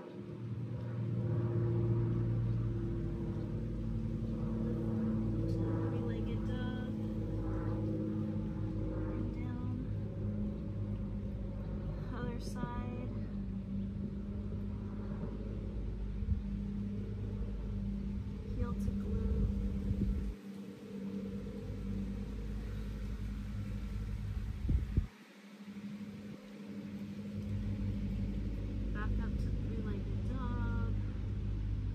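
Low, steady rumble of a motor vehicle engine running nearby, its pitch shifting a little now and then, with a few short high chirps over it.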